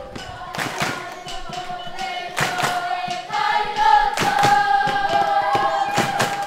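A group of children singing together with hand claps, ending on a long held note through the second half.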